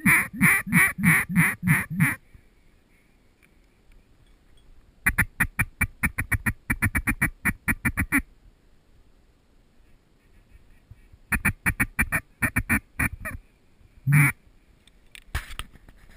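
Mallard-style quacking in three runs: a slower series of about seven quacks, then a fast chattering run of about two dozen, then another series of about ten. A single louder quack follows near the end.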